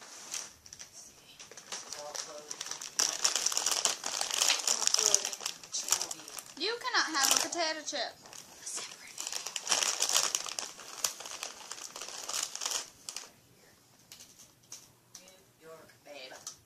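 Plastic bag crinkling and rustling as it is handled, in two long stretches: the first about three seconds in, the second about nine seconds in.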